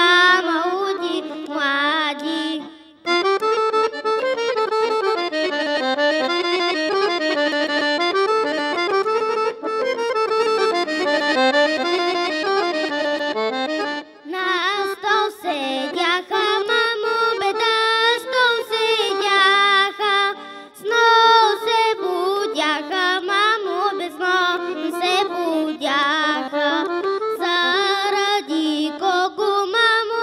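A girl's voice singing a Bulgarian folk song, cut off about three seconds in; then a solo accordion plays an instrumental introduction, and from about halfway a girl sings the folk song with the accordion accompanying her.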